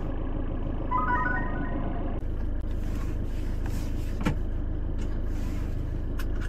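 Van engine idling steadily, heard from inside the cab. About a second in, a short run of electronic dashboard chimes sounds, and a single sharp click comes a little after four seconds.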